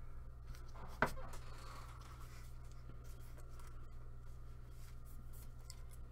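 Faint rustling and scraping of gloved hands handling a trading card and clear plastic card holders, with one sharp click about a second in.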